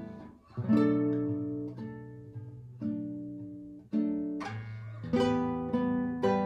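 Classical guitar played solo and slowly, fingerpicked: chords and single notes that ring out and fade. There is a brief pause a little under half a second in, after which the notes come about once a second, closer together near the end.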